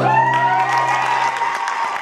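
Audience applauding and cheering at the end of a song, while the final acoustic guitar chord rings on and fades out about a second and a half in.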